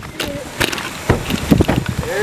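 Wind buffeting the microphone, with several knocks of handling as the camera is swung around, and a brief voice early on.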